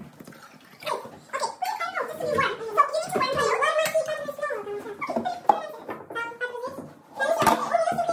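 Young women's voices chatting in conversation, with a sharp knock near the end.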